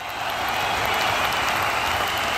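Audience applauding, fading in over the first half second and then holding steady.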